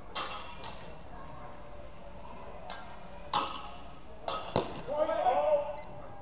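Sword-and-buckler sparring: steel training blades and bucklers clashing in several sharp, ringing strikes, two in quick succession at the start, one about three seconds in and two more close together just after. A shout follows near the end.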